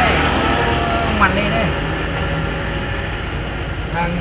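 Steady road traffic noise from passing motor vehicles, with a man's voice speaking in brief snatches during the first second and a half.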